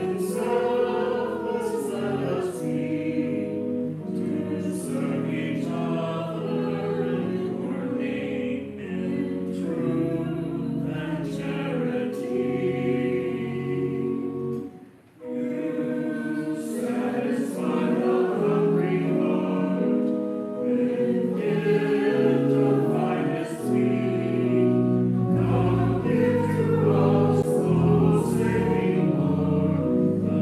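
Small mixed choir of men and women singing a hymn together in sustained chords, with a short break about halfway through between phrases.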